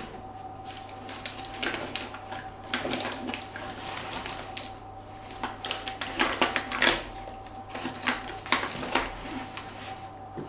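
Makeup items and containers being handled and rummaged through: irregular clicks, taps and small clatters, over a faint steady tone.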